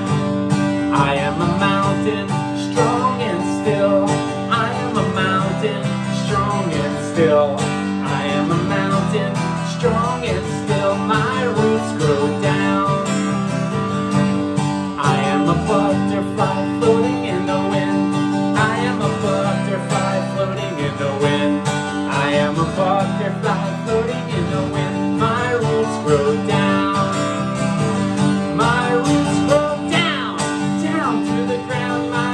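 Acoustic guitar strummed in a steady, upbeat rhythm, playing a simple children's song.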